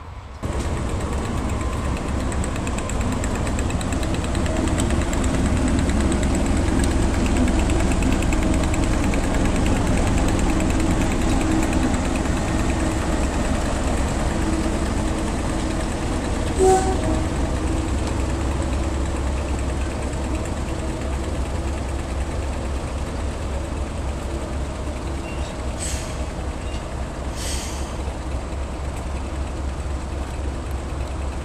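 Class 37 diesel-electric locomotive's English Electric V12 engine running as it draws past, growing louder and then slowly easing off. A short, sharp pitched sound cuts in about halfway through, and two brief knocks come near the end.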